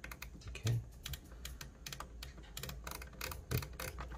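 Quick runs of small dry clicks from the detented frequency knob on an Agate AT-2040 vibration calibrator as it is turned; the clicks come faster when the knob is spun faster.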